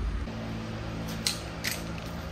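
A steady low hum with two light clicks past the middle.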